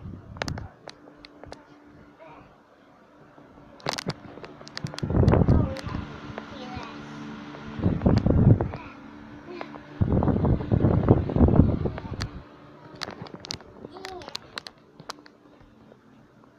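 Muffled children's voices close to the microphone, with clicks and three loud rumbling bursts about five, eight and ten to twelve seconds in, from the phone's microphone being handled and covered.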